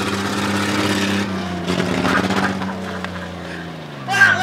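SUV engine running steadily at low speed, a low hum that fades a little and drops slightly in pitch near the end.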